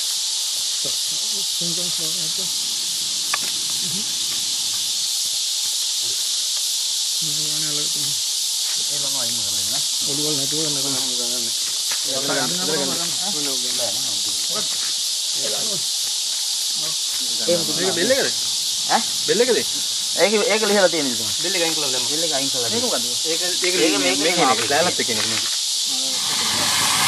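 Steady high-pitched insect chorus, an even hiss that runs unbroken, with men's voices talking low underneath from about eight seconds in.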